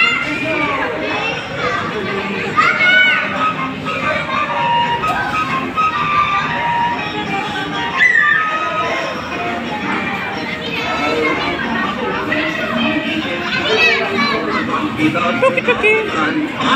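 Children's voices and high calls over music from a kiddie carousel ride, with the general chatter of a busy play area.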